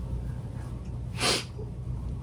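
A person's single short, sharp breath noise, like a puff or sniff, a little over a second in, over a low steady hum.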